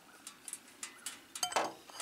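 A series of light metallic clinks and taps from an aluminium fuel bottle being handled against a motorcycle's fuel tank filler after pouring, a few of them ringing briefly.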